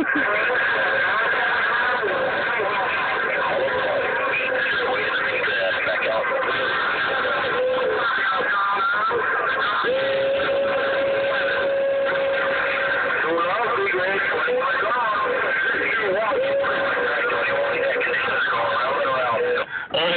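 CB radio receiving a strong, rough transmission: garbled speech the whole way, mixed with wavering whistling tones and one steady tone held for about three seconds around the middle. The incoming station is strong enough to be 'stepping on all the neighbors', bleeding over nearby channels.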